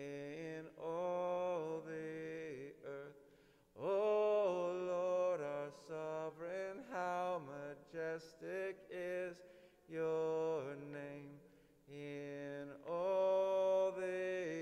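Slow, chant-like singing in long held notes that step from pitch to pitch, sung in short phrases with brief pauses between them.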